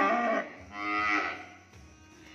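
Young cattle mooing: a loud moo that ends about half a second in, then a second, weaker moo that fades out by about a second and a half.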